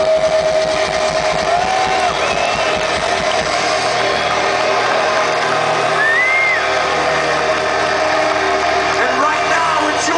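Metal band's live sound ending at a large outdoor concert: the low drum and bass pulse stops about three and a half seconds in, and a steady held tone rings on. A big crowd is cheering and yelling all through.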